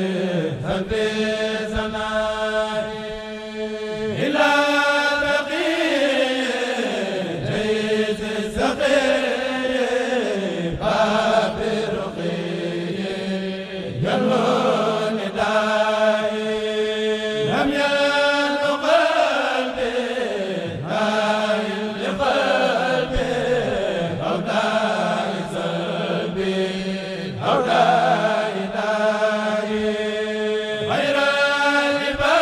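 Men's chanting group reciting a Mouride xassida unaccompanied, voices rising and falling in long melodic phrases over a steady held low note.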